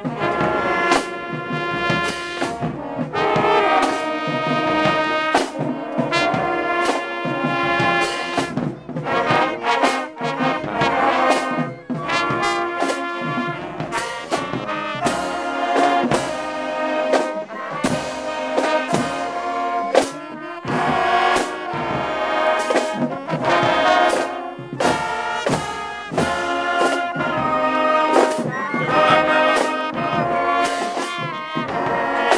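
Full school marching band playing a tune: trumpets, trombones and saxophones lead, with flutes and clarinet, over a regular beat of drums and cymbals.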